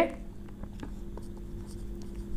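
Marker pen writing on a whiteboard: a series of faint short strokes and squeaks as letters are drawn, over a steady low hum.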